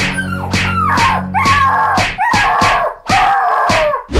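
A rapid series of yelping cries, each falling in pitch, about two a second, over background music whose low notes stop about halfway through.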